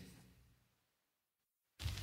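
Near silence in the gap between two songs. Near the end the next track fades in with a faint low hum and a light crackling hiss.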